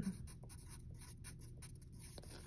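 Pencil writing on paper: a faint run of short strokes as a word is written out in cursive.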